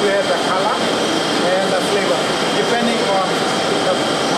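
Ice cream factory processing machinery running with a steady noise and a thin high whine, under a man talking.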